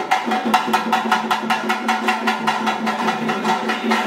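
Small hand drum beaten in a fast, even rhythm of about four to five strokes a second, with a steady low tone sounding underneath.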